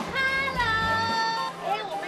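A high held sung note from the trailer's soundtrack music, sliding down in pitch about half a second in and ending after about a second and a half.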